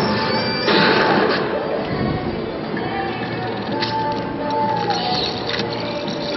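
Slot machine bonus-game music and electronic tones playing over the dense background noise of a casino floor, with a louder burst of noise about a second in.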